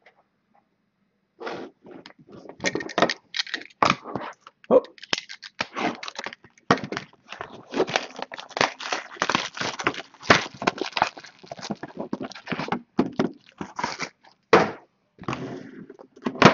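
Plastic wrapping crinkling and tearing on a sealed trading-card hobby box as it is opened and a plastic-wrapped mini box is pulled out, with cardboard scraping and handling: dense, irregular crackling that starts about a second and a half in.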